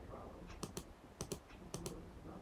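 Faint clicking from a computer's mouse and keys: three pairs of quick clicks, about half a second apart.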